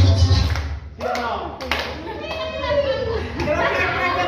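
Latin dance music with a heavy bass beat stops abruptly under a second in. Then come a few hand claps and the voices of several people talking in a large room.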